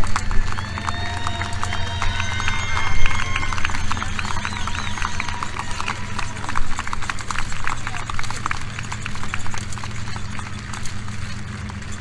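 A crowd applauding with many separate hand claps, with cheers and shouts in the first few seconds, over a steady low hum. The clapping thins out toward the end.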